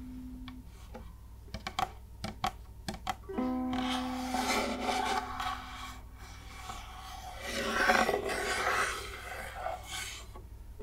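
Fingertips tapping, scratching and rubbing on the wooden body of an UMA ukulele: a few light taps, then long scratching strokes that are loudest about eight seconds in. The open strings ring out once about three seconds in and fade over a couple of seconds.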